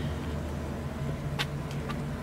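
A vehicle engine idling, a steady low hum, with a light click about one and a half seconds in.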